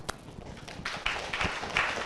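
A single sharp click, then a small audience starting to clap about a second in, the claps quickly filling in to applause.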